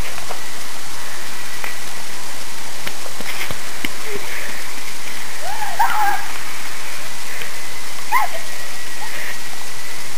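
Steady loud hiss of noise on the recording, with a short high cry about six seconds in and another about eight seconds in as one girl tackles another.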